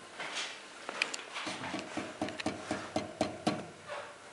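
Porcelain pestle working rock fragments in a porcelain mortar: a run of sharp clinks, about four a second, starting about a second in, each with a short ring from the porcelain.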